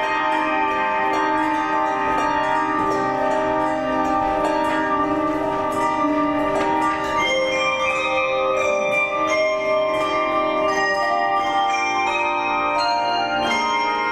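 Handbell choir ringing a toccata: many bells struck in quick succession, their tones ringing on and overlapping in chords.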